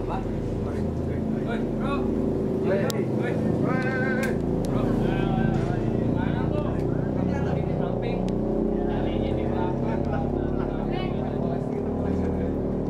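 A group of young people chatting casually, their voices coming and going, over a steady low hum.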